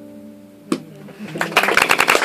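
A held musical chord fading out, a single sharp knock just under a second in, then audience applause breaking out about a second and a half in and continuing.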